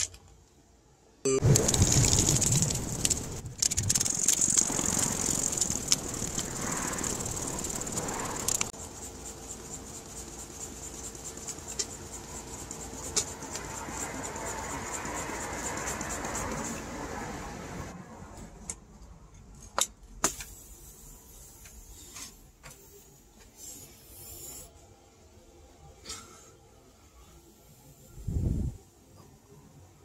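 Plastic bag crinkling loudly for several seconds, then quieter handling noise and scattered clicks as a pump's inflation needle is worked into a small rubber basketball.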